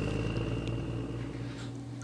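A steady low hum with a faint high, thin tone that fades away about three-quarters of the way through; no distinct tool or handling sounds.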